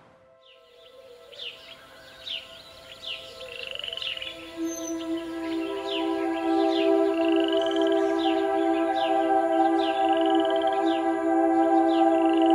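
A bird calling over and over with short falling chirps about twice a second, now and then a longer rising whistle. A sustained ambient music drone fades in beneath it from about four seconds in and grows louder.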